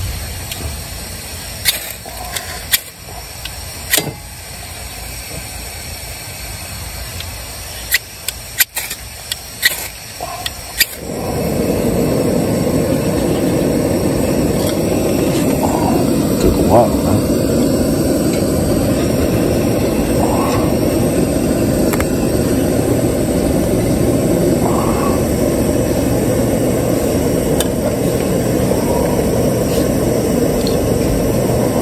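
Ferro rod struck several times with a knife sharpener, short sharp scrapes throwing sparks. About eleven seconds in, a steady rushing noise sets in and holds: the fire catching and burning.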